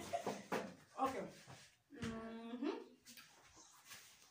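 Indistinct speech from several people in a small room, with one drawn-out vocal sound about two seconds in that rises in pitch at its end.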